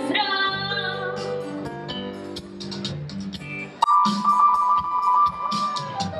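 Children singing live into microphones over instrumental backing music; a sung note is held at the start, and a long, steady high note comes in about four seconds in.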